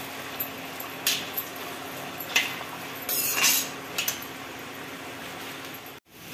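Diced potatoes sizzling steadily in hot oil in a kadhai, with a metal slotted spoon clinking and scraping against the pan about four times as they are stirred.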